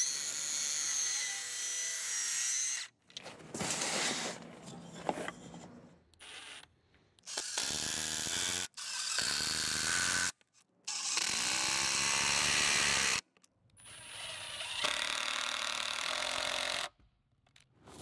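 About seven bursts of cordless power tools working softwood, each cut off abruptly: a cordless circular saw cutting a 45-degree brace from a 2x board and a cordless driver running long exterior screws through the brace into the bench leg.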